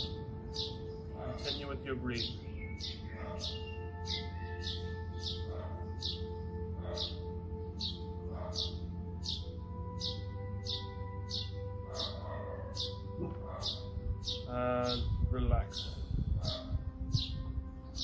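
Calm background music of sustained held tones, with a bird chirping over it, one short high, falling chirp about every two-thirds of a second, steady and unbroken.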